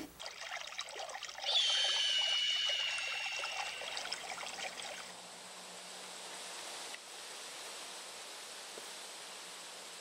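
Liquid poured into a mug for about three seconds, with a clear ringing tone in the stream that falls slightly in pitch, after a few light clicks. Then a faint steady outdoor hiss.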